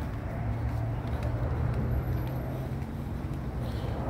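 Low, steady rumble of road traffic, with a few faint clicks.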